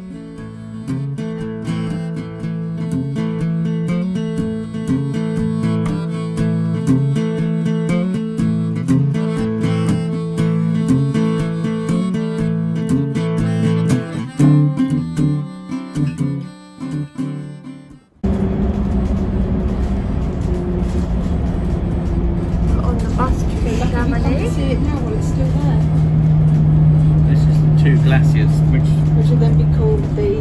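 Acoustic guitar music for roughly the first eighteen seconds, ending abruptly. It is followed by the steady drone and rumble of a bus's engine and road noise heard from inside, with indistinct voices of passengers talking.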